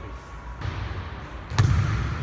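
A basketball bouncing once, hard, on a hardwood gym floor about one and a half seconds in.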